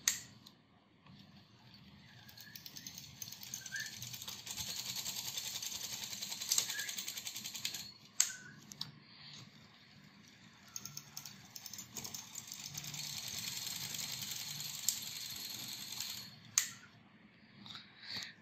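Motor-driven knitting machine carriage travelling slowly along the needle bed at its lowest speed, its needles ticking in a quiet, fine, rapid clatter that swells and fades twice. There are sharp clicks about eight seconds in and again near the end.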